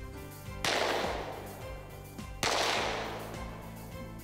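Two rifle shots about two seconds apart, each sharp at the start and dying away over a second or so, over steady background music.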